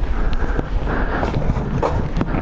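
Clothing rustling and scraping against rough concrete, with scattered knocks and handling noise on a body-worn camera, as a person squeezes out through a narrow bunker opening.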